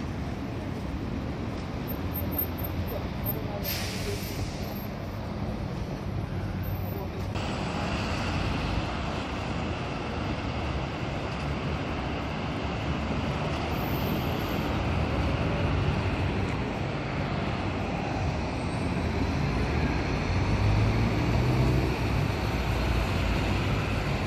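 City street traffic with a diesel city bus running close by, with a short hiss of air about four seconds in. After that, the steady sound of traffic passing on the road below.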